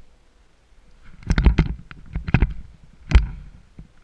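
Close rustling and knocking of paragliding gear being handled, in three bursts about a second apart, with a low rumble under each.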